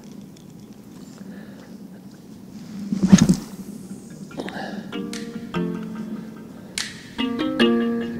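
A spinning rod cast: a short swish about three seconds in. From about five seconds, plucked acoustic guitar background music takes over.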